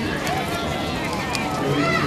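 Crowd chatter: many voices talking at once, none standing out, with a few sharp clicks.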